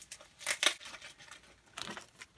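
A small plastic bag crinkling in a few short rustles as a package is opened, about half a second in and again near the end.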